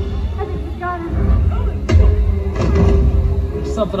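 Stunt-show soundtrack music with a heavy low end, with performers' amplified shouting mixed in and a sharp bang about two seconds in.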